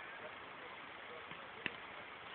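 Faint outdoor background with distant voices, and one sharp click near the end.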